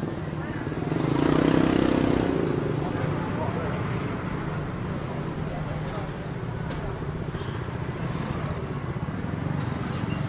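Street traffic of motor scooters and cars, with small engines running steadily, and one vehicle passing close and loud about a second in.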